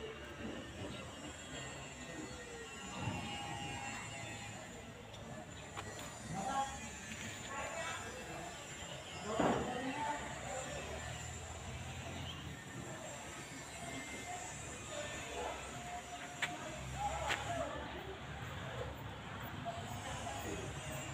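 Faint, indistinct voices coming and going over a steady background hiss.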